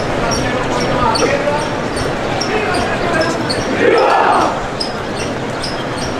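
Metal incense censers clinking in a steady rhythm, about three times a second, as they are swung, over the murmur of a large crowd.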